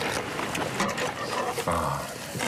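A person taking a big bite of a lettuce-and-perilla leaf wrap and chewing it, with mouth noises, and a short low hummed "mm" near the end.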